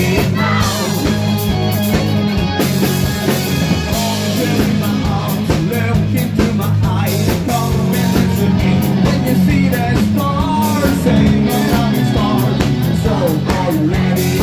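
A live band playing with a male singer singing into a handheld microphone over bass, guitar and drums, amplified through a club PA.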